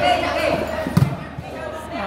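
A volleyball struck hard by a player's hand, one sharp smack about a second in, amid the chatter of spectators.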